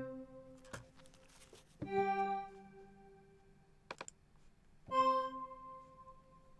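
Additive synth pad from Native Instruments FM8, with chorus and a big reverb: single notes played about every three seconds, a new one about 2 s in and another near 5 s, each fading out into a reverb tail. A few short clicks fall between the notes.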